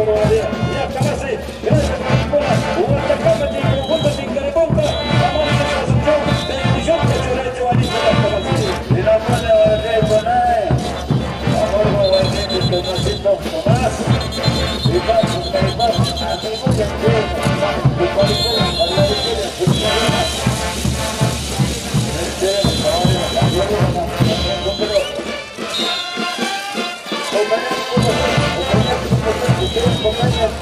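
Live band music for a traditional dance: a steady drumbeat under wind instruments playing the melody. The drums drop out for a couple of seconds near the end.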